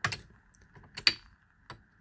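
Metal clicks and clinks of a steel Allen wrench working the shell plate retaining bolt on a Hornady AP progressive reloading press, with one sharp click about a second in as the bolt breaks loose.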